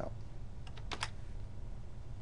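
A short cluster of computer keyboard keystrokes about a second in, over a faint low steady hum.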